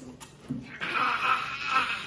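A child breathing out hard through a wide-open mouth, a breathy hiss that grows louder toward the end, the reaction to a mouth burning from a spicy chip.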